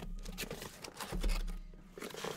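Cardboard case being handled and opened, with scattered light knocks and scrapes of cardboard as the sealed card boxes inside are slid out.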